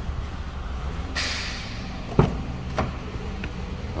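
Rear passenger door of a 2014 Nissan Rogue being opened: a swish a little past a second in, then a sharp latch click about two seconds in and a lighter knock shortly after, over a steady low hum.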